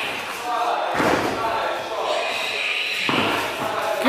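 Kickboxing pad work: two sharp strikes landing on focus mitts about two seconds apart, echoing in a large hall.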